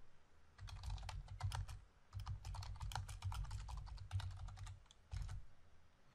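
Typing on a computer keyboard: a run of quick key clicks, with a short pause about two seconds in and a last few keystrokes near the end.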